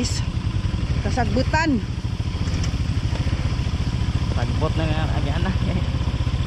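ATV engine running steadily at low speed, a fast even putter.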